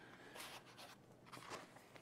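Faint rustling of a paperback book's pages being handled, in two short bursts, against near silence.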